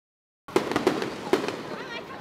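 Fireworks going off after about half a second of dead silence: a quick run of sharp bangs, three of them loudest, with smaller cracks between.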